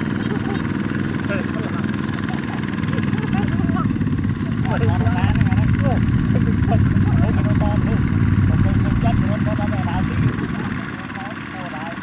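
Kubota ZT120 walking tractor's single-cylinder diesel engine running steadily under load as it pulls a loaded trailer. It grows louder in the middle and drops off near the end.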